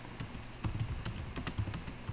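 Computer keyboard typing: an irregular run of key clicks.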